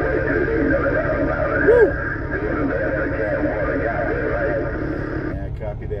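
A distant station's voice coming in over a CB radio speaker, thin and muffled in a bed of static hiss, breaking off suddenly about five seconds in as the transmission ends. A steady low rumble runs underneath.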